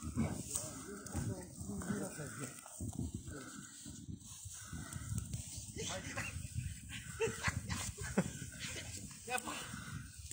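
Boots crunching through deep snow and hay bales scraping and rustling as they are hauled over it, close to the microphone. Short wordless vocal sounds come through here and there, mostly in the second half.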